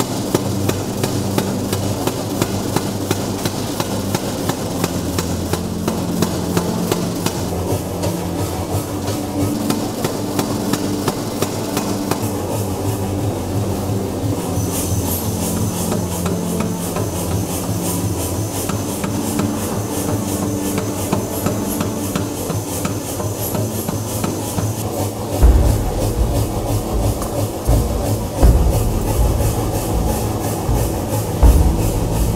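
Brass gong blank being beaten with hammers in rapid, steady strokes, the metal ringing under the blows. Heavier, deeper thuds join in near the end.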